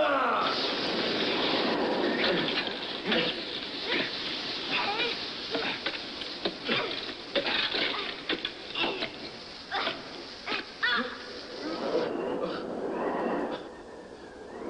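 Action-film soundtrack: a loud, steady hiss with many short sharp hits and a few brief voice-like cries over it, easing off about twelve seconds in.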